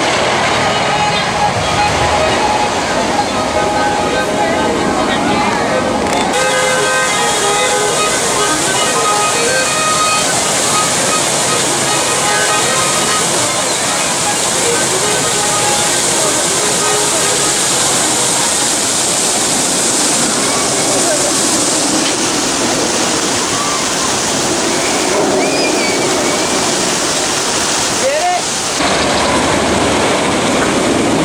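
Fountain jets splashing down into a pond: a steady hiss of falling water that grows louder about six seconds in, with crowd voices and music faintly underneath.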